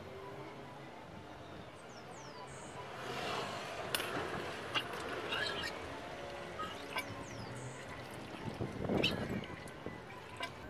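Old fork oil draining from an upturned Suzuki GSR 600 front fork leg into a plastic jug as the tube is worked up and down, with faint gurgling and a few light clicks of the metal tube.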